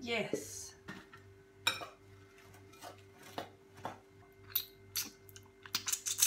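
Kitchen clatter: a scrape as chopped lettuce is pushed off a wooden cutting board into a glass bowl, then a series of separate knocks and clinks of a knife and dishes against the board and the steel counter. A faint steady hum runs underneath.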